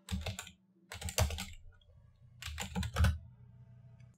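Typing on a computer keyboard: three short bursts of keystrokes, with gaps of about half a second and a second between them.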